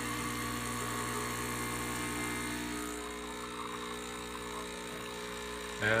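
Saeco Aroma espresso machine's vibratory pump buzzing steadily as it pulls an espresso shot, easing slightly about three seconds in. The shot pours well, a sign the machine is working normally.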